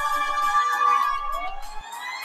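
Opera singing with long held high notes; near the end one note slides upward in pitch.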